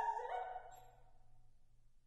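Violin's closing notes: one held note slides down and a second note enters just after, both fading out within the first second. What follows is faint room tone.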